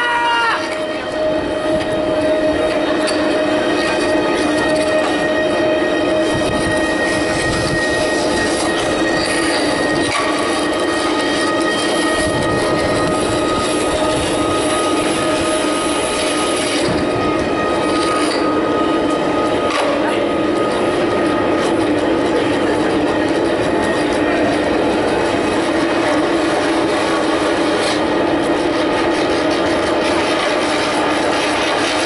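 Electronic score: a dense, steady grinding noise texture with long held tones layered over it, one higher tone entering about ten seconds in and dropping out around twenty seconds.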